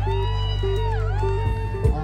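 Live band music over a steady bass and a repeating keyboard pattern, with one long held lead note that dips in pitch and comes back up about a second in.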